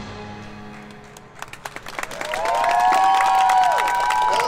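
The last notes of a percussion ensemble ring out and fade. About a second and a half in, the audience breaks into applause and cheering, with several long high-pitched shouts overlapping.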